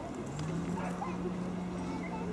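A dog's long, low whine held at one steady pitch for about two seconds, starting a moment in.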